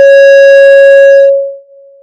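Public-address microphone feedback: a loud, steady howl at one pitch that holds for about a second and a half, then falls away to a faint ring.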